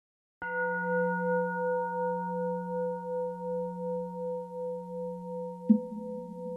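A struck, bell-like metal tone rings out about half a second in and fades slowly, wavering gently as it dies away. Near the end a second, sharper strike sounds over it.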